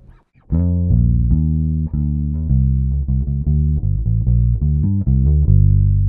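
Electric bass guitar playing a gospel lick: a quick run of single low notes, beginning about half a second in, starting from the fifth of the key and ending on a longer held note.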